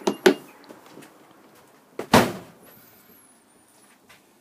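The split entrance door of a 2009 Bailey Senator caravan being worked: two sharp latch clicks, then about two seconds in a heavy thud as the door shuts, the loudest sound.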